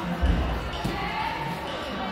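A gymnast's tumbling on a sprung floor-exercise floor: a heavy landing thud just after the start, then a lighter knock a little under a second in.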